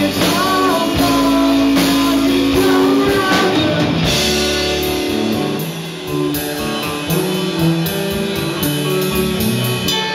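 Live rock band playing: electric guitars, electric bass and drum kit, with a sung lead vocal over the first few seconds. About four seconds in, the band plays on without the voice, with held chords and steady cymbal strokes.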